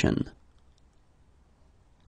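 The end of a spoken phrase, then a pause of near silence: room tone.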